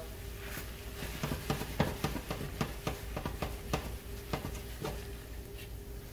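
Wooden spoon scraping and knocking around a stainless steel pan as red wine deglazes the simmering tomato and vegetable mixture, loosening the browned bits from the bottom. It comes as irregular scrapes and taps, several a second, over a faint steady hum.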